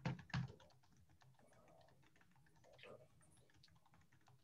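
Faint typing on a computer keyboard: a quick, uneven run of light key clicks, the loudest strokes in the first half-second.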